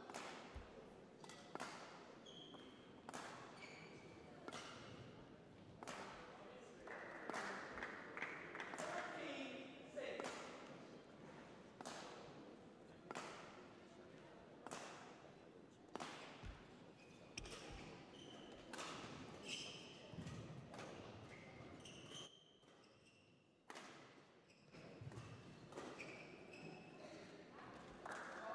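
Badminton rally heard faintly in a large hall: sharp racket strikes on the shuttlecock about once a second, each with a short echo, with brief high squeaks between them; the strikes thin out in the second half.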